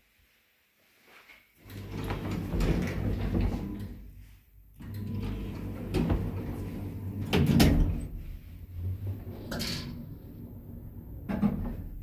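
Ayssa passenger lift running: a steady low motor hum starts about one and a half seconds in and drops out briefly near the middle. Sliding doors and several sharp clicks and knocks from the lift's door and car gear sound over it.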